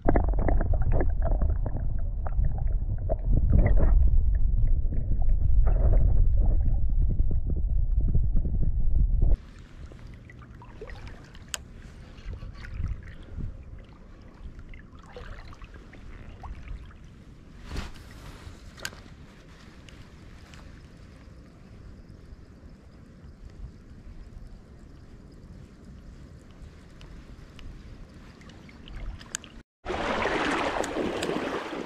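Loud, low, muffled water sloshing and handling noise around a landing net held in the stream for about the first nine seconds. Then it drops suddenly to a quieter, steady stream flow with scattered small clicks.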